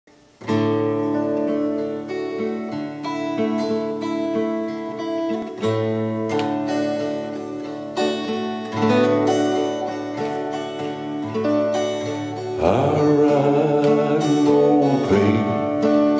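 Solo acoustic guitar playing a slow folk-song intro, chords picked and strummed. A man's voice joins over the guitar near the end.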